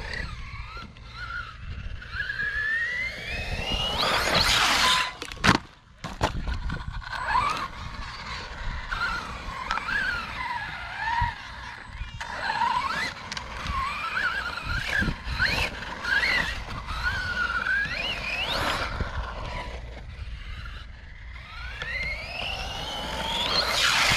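Brushless electric motor of a 1/10-scale RC trophy truck whining, its pitch rising and falling again and again with the throttle, with several long climbing runs to full speed. A few sharp knocks come about five seconds in.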